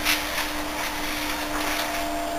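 A steady machine hum: a constant low whine over an even hiss, unchanging throughout.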